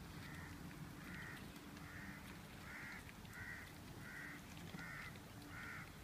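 A bird calling over and over in the background, about eight short calls a little under a second apart.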